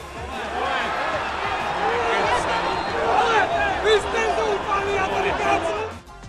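Stadium crowd in the stands: many voices shouting and calling out at once, swelling about half a second in, as a late goal is scored.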